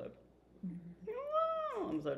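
A single cat meow, one call that rises and falls in pitch, starting about a second in and lasting under a second.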